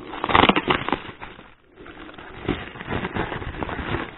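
Plastic bubble wrap crinkling and crackling as it is handled and pulled off a small box, loudest in the first second, with a brief lull about a second and a half in before the crackling resumes.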